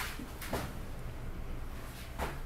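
Mitsubishi Elepaq rope-traction elevator car travelling downward: a steady low rumble of the moving car, with two short sharp clicks, one at the start and one about half a second in.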